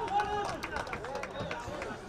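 Several men's voices calling and shouting, overlapping, at moderate level over outdoor field ambience.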